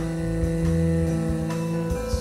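Live jazz-fusion band music: an instrumental passage of long held notes over a low bass line.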